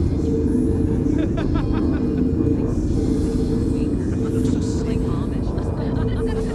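Steady low rumbling drone with a held note, typical of a dark film-score bed, with a brief voice about a second in.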